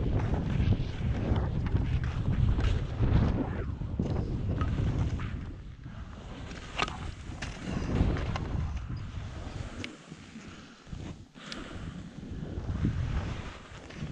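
Wind buffeting the microphone of a first-person camera on a downhill skier, with skis hissing and scraping through snow. A few sharp clicks come through, and the rush eases twice in the middle as the skier slows in the trees, then builds again near the end.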